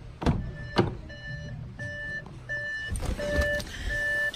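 Two sharp clicks from the Audi A6's door latch as the door is opened, then the car's electronic warning chime beeping in a steady two-tone pattern, about one beep every 0.7 seconds.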